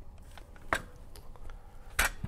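Quiet handling sounds of a potato and a cut-resistant-gloved hand on a plastic mandolin slicer: one sharp click about three-quarters of a second in and a few fainter taps.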